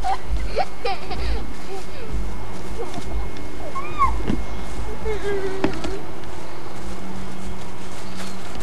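Young children's distant shouts, calls and squeals as they play, over the steady background rumble and hiss of an old camcorder recording.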